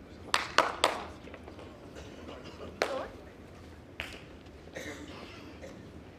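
A few sharp handclaps in an indoor hall: three in quick succession about half a second in, then a few scattered single claps, with faint voices in the background.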